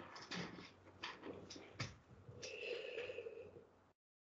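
Faint breathing and small mouth clicks close to a computer microphone, with a longer breathy exhale from about two and a half seconds in; the sound then cuts out to complete silence near the end.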